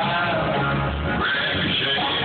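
Live country band playing on stage, picked up on a phone's microphone from among the audience in a large hall.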